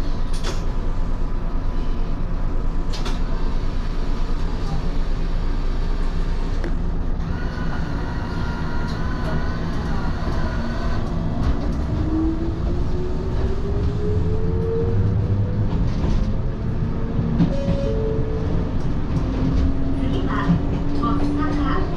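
Electric railcar pulling away from a station and accelerating: its motors give a rising whine over a steady low running rumble. A couple of sharp clicks come near the start.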